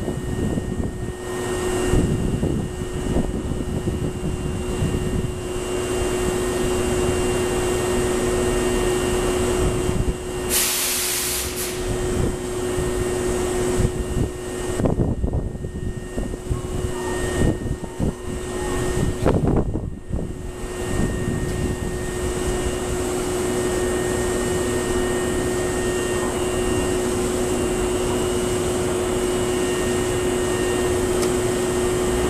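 A Hankyu 6000 series electric train standing at the platform, its onboard equipment giving a steady hum with a held tone. About ten seconds in, a short burst of compressed-air hiss lasts just over a second.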